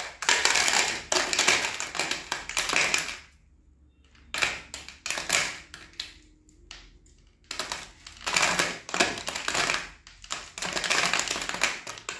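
A homemade shaker rattle being shaken in four bursts of dense rattling, each two to three seconds long, with short pauses between.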